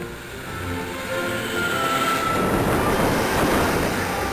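A Class 150 Sprinter diesel multiple unit passes close beneath. Its noise builds to a peak about three seconds in, with a brief high whine shortly before, under background music.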